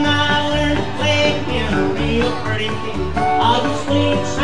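Live rockabilly band playing an instrumental break: upright bass thumping a steady beat about twice a second under strummed acoustic rhythm guitar, with a lead line played on guitar above.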